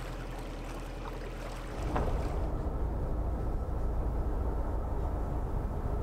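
A narrowboat's engine running steadily while cruising, a low even pulsing hum. About two seconds in, a louder low rumble with wind noise on the microphone comes in and continues.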